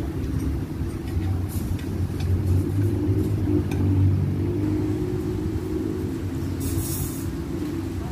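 A steady low rumble with a hum in it, swelling to its loudest about midway, like a vehicle engine running close by. A few light clinks of spoons and forks on plates come through it.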